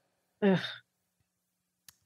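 A person's short exasperated 'ugh', a sigh-like groan of under half a second.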